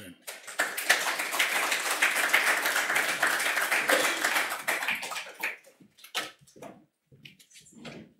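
Audience applauding: dense clapping that thins out after about five seconds into a few scattered claps.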